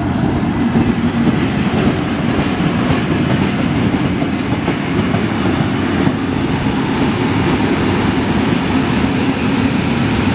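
Heritage Tait electric suburban train running past at close range: a loud, steady rumble of wheels on rails and carriages going by.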